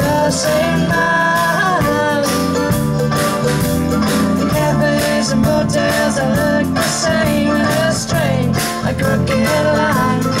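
Live indie-folk band playing: a woman's lead vocal over strummed acoustic guitar, with mandolin, bass guitar and a drum kit keeping a steady beat.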